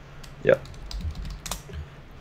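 Typing on a computer keyboard: a few scattered key clicks.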